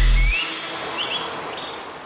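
The tail of an electronic intro jingle: its heavy bass stops abruptly about a third of a second in, leaving a fading wash of noise with a few short bird chirps.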